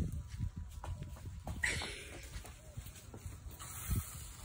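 Garden hose with a pistol-grip spray nozzle spraying water onto a lawn, heard as a soft hiss that is strongest from about one and a half to three seconds in, over a steady low rumble.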